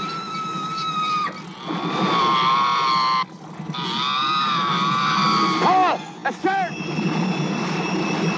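Harpooned female killer whale crying out in distress: long, high, wavering whistle-like cries, then a run of short arching squeals about six seconds in, over a steady low rumble.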